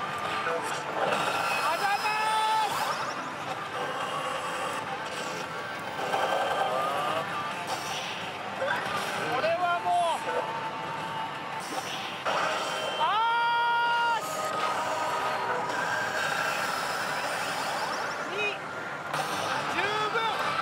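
Pachislot machine play sounds over the steady din of a pachislot hall: electronic jingles, effect tones and voice clips from the machines, with a long held pitched call about 13 seconds in.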